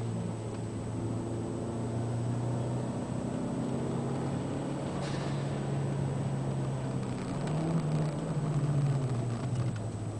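Cabin sound of a Toyota MR2 Turbo's turbocharged four-cylinder engine pulling on track. Its pitch rises about three-quarters of the way through and drops back just before the end.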